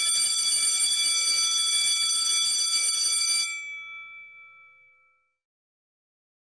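Electronic intro sound effect: a steady ringing tone with several high overtones, like an alarm or bell, holding at an even level for about three and a half seconds, then fading out over about two seconds without changing pitch.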